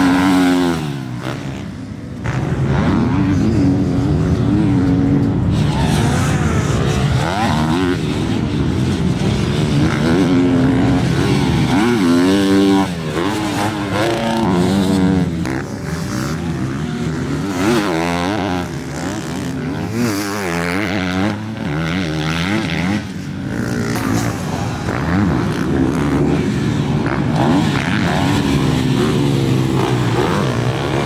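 Motocross dirt bike engines revving hard on a dirt track, the pitch climbing and dropping again and again as the riders shift and get on and off the throttle through corners and jumps.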